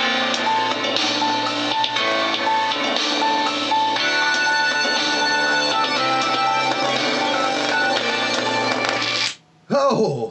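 Rock music with guitar and drums played loudly through a small oval computer-speaker driver driven by a 2000-watt amplifier. About nine seconds in the music cuts off suddenly as the overdriven driver fails and starts smoking, followed by a short burst of sound near the end.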